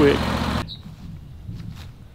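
A low, steady engine idle under the end of a spoken word cuts off abruptly about half a second in. It gives way to quiet outdoor ambience with faint scattered scuffs.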